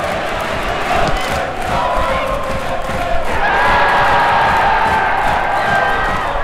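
A large football stadium crowd cheering, growing louder about halfway through, with long held shouts standing out from the roar.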